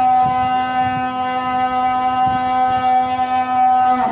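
A single steady tone with many overtones, held unchanging at one pitch and cutting off near the end.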